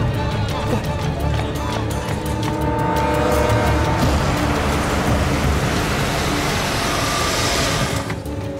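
Dramatic background music over the sound of a vintage car's engine and tyres as it drives up. The car noise grows from about halfway through and cuts off suddenly at the end.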